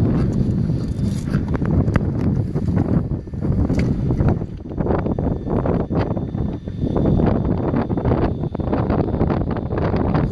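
Wind buffeting the microphone in gusts, a loud low rumble that rises and falls, with a few light clicks from handling.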